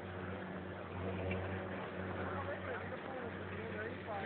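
A steady low mechanical hum, with faint voices over it from about a second in.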